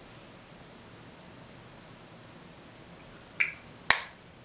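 Quiet room tone, then two sharp plastic clicks of a makeup compact being handled near the end, about half a second apart, the second louder.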